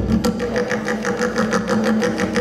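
Tonbak (Persian goblet drum) played solo with the fingers: a rapid, unbroken run of strokes on the skin over a ringing low drum tone.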